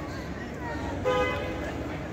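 A short, steady horn toot about a second in, over faint background crowd chatter.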